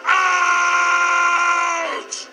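The Beast's voice in a loud, long shout held on one pitch, bending down just before it stops: the end of his furious "Get out!"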